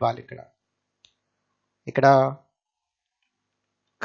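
A voice speaking briefly, the end of a sentence and then one short word about two seconds in, with a single faint click about a second in; silence in between.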